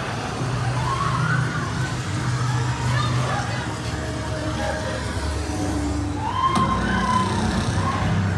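Haunted-maze sound effects over the speakers: a steady low hum with wailing tones rising and falling over it, and a sharp click about six and a half seconds in.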